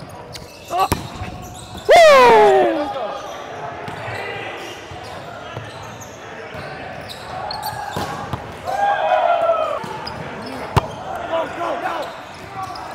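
Volleyball rally in a reverberant gym: players shouting and calling to each other, loudest a call that falls in pitch about two seconds in, with three sharp smacks of the ball being hit.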